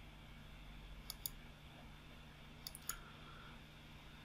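Computer mouse clicking: two quick pairs of clicks about a second and a half apart, over a faint steady hum.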